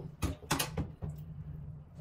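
A quick series of sharp plastic clicks and knocks in the first second, from handling the robot mop's water tank, over a steady low hum.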